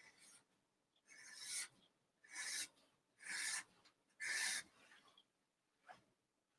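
A felt-tip marker drawn across stretched canvas in four separate strokes, about one a second, each lasting a fraction of a second: curved vertical lines being drawn.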